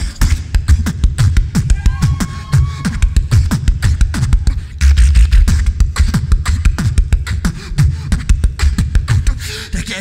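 Solo human beatboxing through a microphone and PA: a fast, dense rhythm of vocal kick drums with deep bass, snares and hi-hat clicks. A short held high tone comes about two seconds in, and a heavier bass stretch around the middle.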